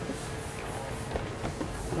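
Cardboard boot boxes being folded by hand on a wooden table: scattered light scrapes and taps of cardboard, over a faint steady tone.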